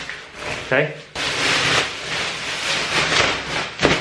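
A plastic trash bag rustling and crinkling as it is shaken and handled, with a brief sharper sound just before the end.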